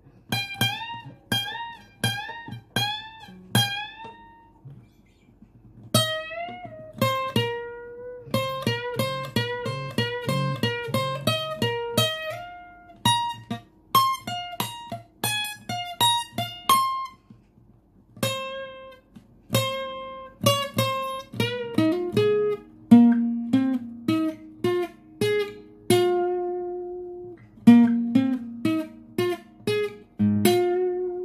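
Yamaha APX 500 II steel-string acoustic guitar playing a single-note lead line. It opens with five repeated notes, each bent up in pitch (full string bends), then runs of single notes broken by two short pauses, with lower notes ringing on near the end.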